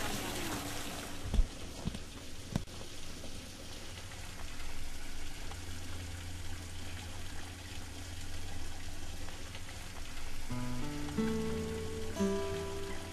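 Steady outdoor background hiss with a low rumble, with a sharp knock about a second and a half in. Music with plucked-string notes comes in near the end.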